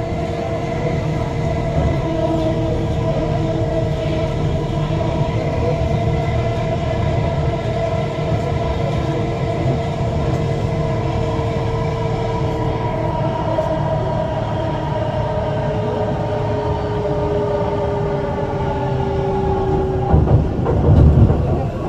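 Bengaluru metro train running on an elevated track, heard from inside the coach: a steady rumble of running noise with a whine from the drive, the whine dropping slightly in pitch in the second half.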